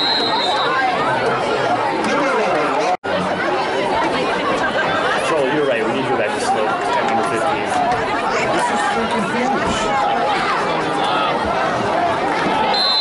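Spectators in the stands chatting, many overlapping voices talking at once at a steady level. A referee's whistle tone dies away within the first second, and the sound cuts out for an instant about three seconds in.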